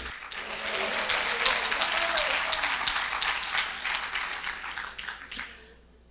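A congregation applauding, a dense patter of many hands clapping that thins out and dies away over about five seconds.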